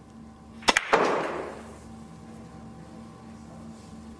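A Russian pyramid billiards shot: a sharp click of the cue tip striking the cue ball, then, a quarter second later, a louder crack as the cue ball hits the pack, followed by a short clatter of balls knocking together that dies away within about a second.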